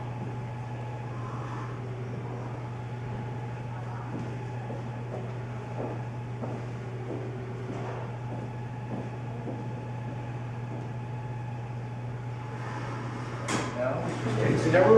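A steady low hum with faint, distant voices now and then.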